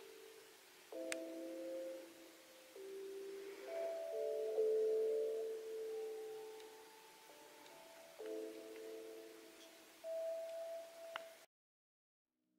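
Soft, slow lo-fi music: mellow sustained keyboard chords changing every second or two, with no clear beat, stopping abruptly near the end.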